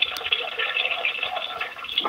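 Open telephone line: faint, crackly noise with the thin, muffled sound of a phone connection.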